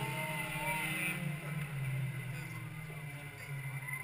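Field of stock cars racing around a short oval track at a distance: a steady low engine drone that swells and dips as the cars circle.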